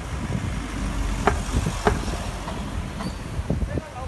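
Low steady rumble of a vehicle engine and street traffic, with indistinct nearby voices and two short clicks in the middle.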